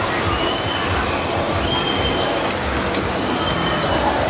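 Busy outdoor ambience: steady, loud noise. Over it, a high, thin whistle-like tone is drawn out three times, about a second each.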